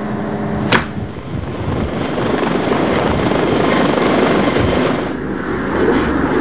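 Aerospatiale SA-365 Dauphin twin-turbine helicopter running as it lifts off a rooftop helipad, its rotor and turbine noise building in loudness. A sharp click about a second in breaks off a steady hum.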